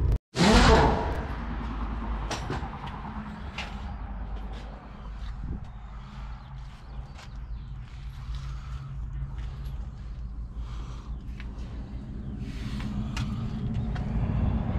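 Truck repair workshop sounds: a short, loud noisy burst right after a cut, then a steady low hum with scattered light metallic clicks and knocks around a truck whose front wheel is off and brake caliper exposed.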